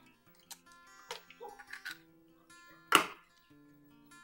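A single sharp crack about three seconds in as an egg is knocked against the blender jar and broken into it, over soft acoustic guitar background music.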